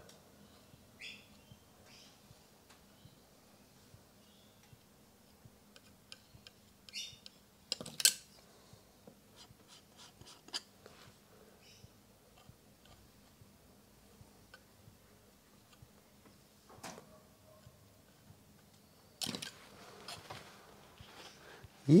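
Palette knife working oil paint on a canvas panel: faint scrapes and scattered light taps, with one sharper click about eight seconds in.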